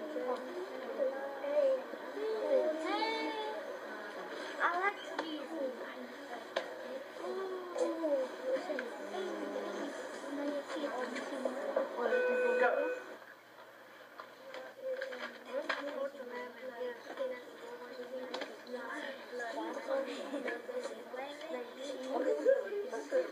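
Indistinct voices of people talking in a classroom, none of it clear enough to make out, with a brief steady tone about twelve seconds in.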